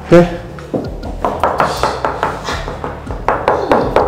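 A run of sharp knocks and taps on ceramic wall tiles, a knuckle rapping the tiling several times a second to check the work for hollow or badly laid tiles.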